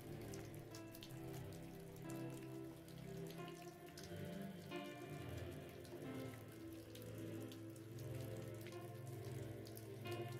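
Soft background music of long held tones with the sound of rain layered over it: a steady patter of drops.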